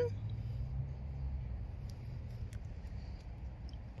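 Quiet outdoor background: a low steady rumble with a few faint clicks.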